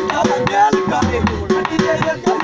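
Dhol, a large double-headed barrel drum, beaten in a steady rhythm of about four strokes a second, with a voice singing a Punjabi folk melody over it.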